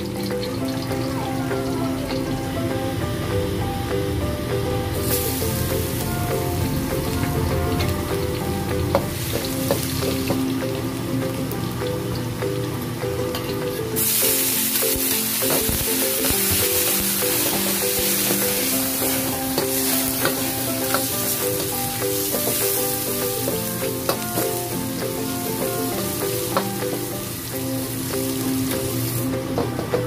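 Chopped onion and garlic frying in hot oil in a wok: a steady sizzle that comes in loudly about halfway through and runs until near the end, after a quieter sizzle earlier. Background music plays throughout.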